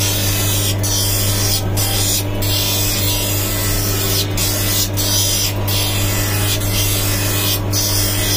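Lens edger's grinding wheel hissing against the edge of a plastic spectacle lens, with the machine motor's steady hum underneath. The lens is being ground down by hand to fit the frame. The grinding drops out briefly several times as the lens is moved or lifted off the wheel.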